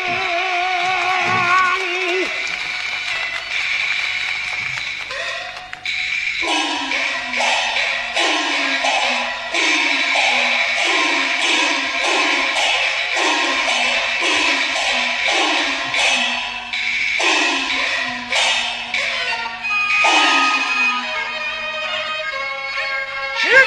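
Peking opera music: a sung note with a wide vibrato ends about two seconds in. The ensemble then carries on, led by a steady run of gong strokes that drop in pitch after each hit, a little under two a second, over high sustained melodic instruments and sharp drum or clapper strikes.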